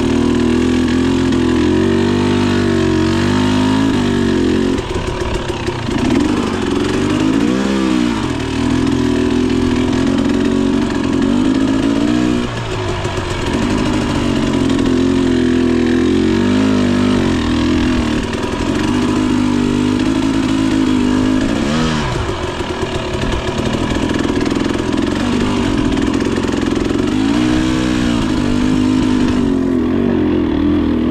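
A Husqvarna 300 TE's single-cylinder two-stroke dirt bike engine, ridden with the throttle working, its revs continually rising and falling, with several sharp swoops in pitch.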